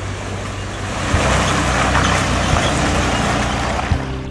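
A 4WD ute's engine running steadily in second gear low range while it fords a shallow, rocky river, with water splashing and rushing around the wheels; the splashing grows louder about a second in.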